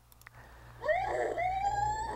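Recorded call of an adult male killer whale played back, starting just under a second in: one long pitched call that rises slowly and steadily.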